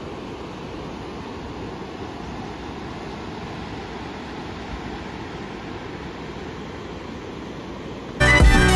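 Steady wind rush on the camera microphone from riding a motorcycle, with no clear engine note above it.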